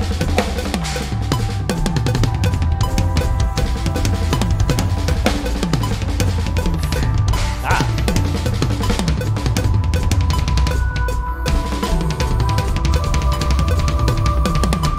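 Electronic drum kit played fast and hard, with constant kick drum plus snare and cymbal hits, along with a backing track of the band's metal song that carries held tones under the drums.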